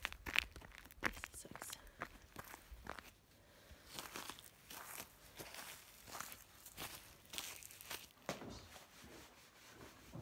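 Boots crunching on frost-covered grass and icy ground, step after step, while walking down a slope. The crackling steps come thickest in the first few seconds.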